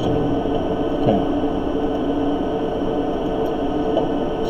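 A steady drone of sustained low tones over a noise haze, unchanged throughout.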